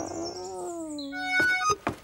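Cartoon dog's long whimper, sliding slowly downward, then a quick run of short, bright musical notes from about a second and a half in.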